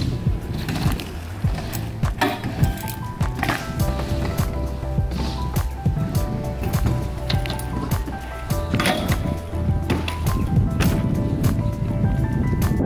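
Background music with a steady bass line, over the sounds of BMX riding on concrete: tyres rolling and sharp knocks from the bikes landing and hitting obstacles.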